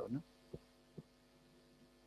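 A pause in a lecture hall holding a faint steady electrical hum, with two soft thumps about half a second apart within the first second.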